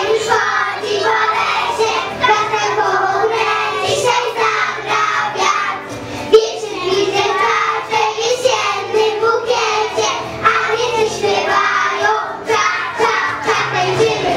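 A young girl singing a children's song into a handheld microphone over backing music. A brief sharp knock comes about six seconds in.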